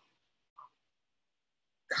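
A pause in a woman's talk: almost silent, with one short faint vocal sound about half a second in, then her speech starts again right at the end.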